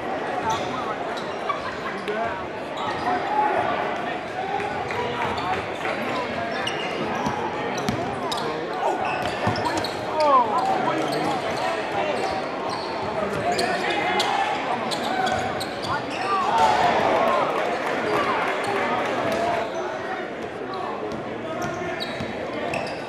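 Live game sound in a gymnasium: a basketball bouncing on the hardwood court amid steady crowd chatter, echoing in the large hall. There are a few brief squeaks around the middle and later on.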